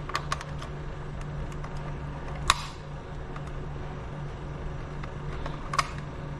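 Steel self-locking reduction clamp clicking as it is compressed and worked on a model pelvis, its locking mechanism catching. A few quick clicks at the start, one loud click about two and a half seconds in and another near the end, over a steady low hum.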